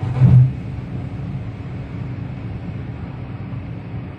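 Steady engine and road drone inside a Ford Figo Aspire at high speed. A brief, loud thump comes about a quarter second in, as the tyres cross a patterned strip on the road surface.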